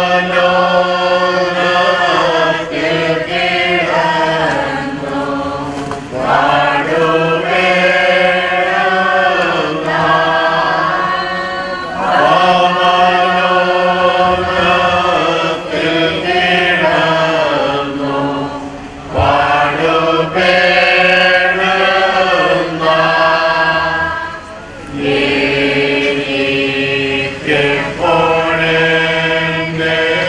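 A group of voices singing a slow hymn together in long phrases, with brief pauses between lines.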